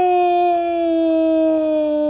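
A man's long, drawn-out "ohhh" of dismay, held on one note and slowly sinking in pitch.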